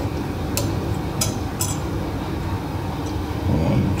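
A plastic headlight housing being worked by hand while a screw is turned out, giving a few small sharp clicks in the first two seconds over a steady low room hum.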